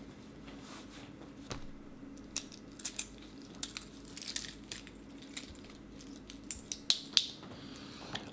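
Faint scattered clicks and brief rustles of a Seiko SRP773's solid-link stainless steel bracelet and fold-over clasp being handled as the watch is put on the wrist, over a steady low hum.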